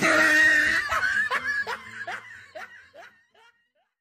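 High-pitched laughter: one long held cry, then a run of short 'ha' pulses, about two and a half a second, each falling in pitch and fading away.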